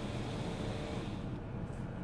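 Power sunroof sunshade motor in a 2018 Chevrolet Impala running faintly as the shade slides back, stopping a little over a second in.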